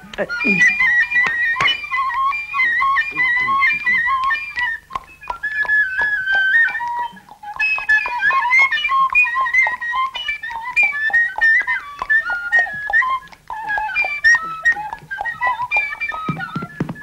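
Wooden flute playing a quick, ornamented melody of short runs and stepwise turns, breaking off briefly twice, with light clicks throughout.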